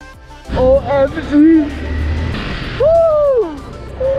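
Wind rush and the engine of a Honda CBR250R single-cylinder motorcycle on the move, setting in about half a second in, with a rider whooping in celebration over it, the longest whoop rising and falling near the end.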